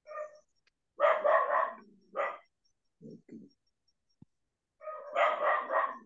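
A dog barking in several short bursts, the loudest about a second in and again near the end, with two softer, lower barks in between.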